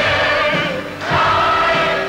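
A large cast of young performers singing together, holding long notes, with a short break between phrases about halfway through.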